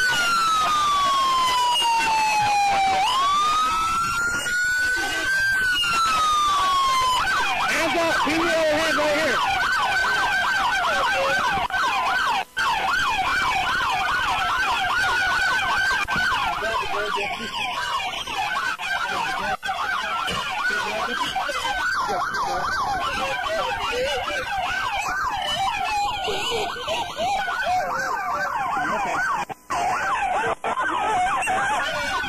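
Police car siren: a slow wail falling and rising in pitch, switching about seven seconds in to a fast yelp.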